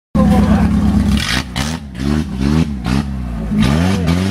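Off-road trail buggy's engine running steadily, then revved in short rising bursts about twice a second from about halfway through.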